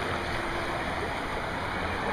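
River rapids rushing steadily, a constant wash of white-water noise.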